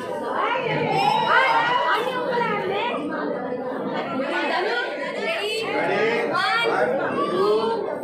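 A group of people talking and calling out over one another, lively mixed chatter of several voices.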